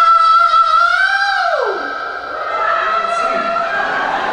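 A man singing a long held high note that slides down about a second and a half in, followed by softer sung phrases.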